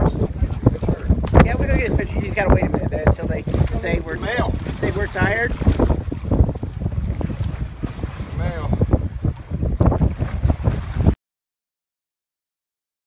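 Wind buffeting the microphone on an open boat at sea, with people's voices calling out over it. The sound cuts off abruptly near the end.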